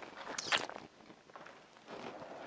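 Adidas Predator Edge.1 FG studded football boots shifting and stepping on a rubber yoga mat. One short, sharp scrape about half a second in is the loudest sound.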